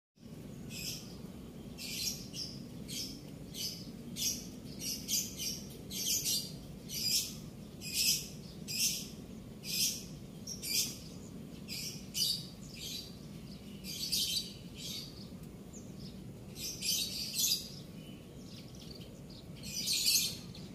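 Small birds chirping in short, repeated calls, about one or two a second, with a brief pause near the end, over a faint steady low background rumble.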